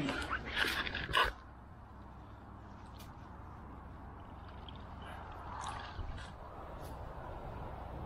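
Dry reed stems and clothing rustling and crackling against the camera for about a second, then a low steady background with a few scattered small clicks.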